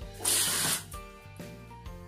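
A curtain swept along its rail: one hissing swish of about half a second, over background music with steady notes.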